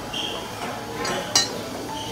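A metal spoon clinks against a ceramic bowl as toppings are spooned in: one sharp clink about two-thirds of the way through, with a brief ringing tone near the start.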